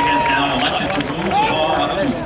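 Speech: a stadium public-address announcer talking.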